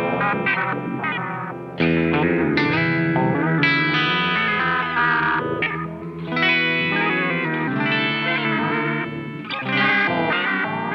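Overdriven electric guitar played through a JAM Pedals Delay Llama Xtreme analog delay pedal, notes and chords sounding with echo repeats behind them. A louder phrase starts about two seconds in.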